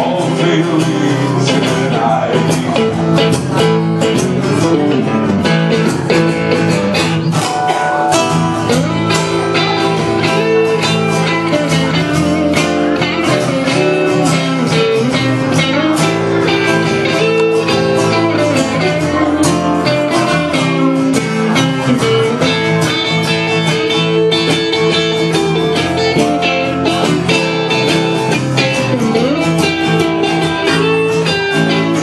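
Live acoustic guitar playing a song with a steady run of plucked and strummed strokes, in an instrumental stretch between sung lines.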